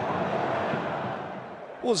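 Stadium crowd noise, a steady murmur without distinct voices that fades steadily down at an edit, before a commentator's voice comes in near the end.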